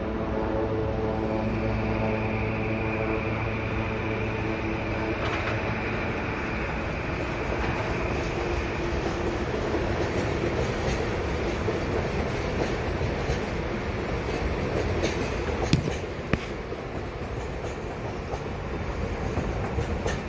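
West Coast Express commuter train passing: a steady diesel drone with a high whine over the first several seconds, then the cars rolling by with rapid clicking of wheels over rail joints and a sharp knock near the end.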